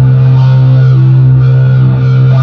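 Live hard rock band playing loud through a concert PA, with distorted electric guitars over a held low note, picked up from within the crowd.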